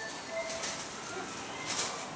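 A few short bird chirps over a soft high rustling, as of cloth being handled.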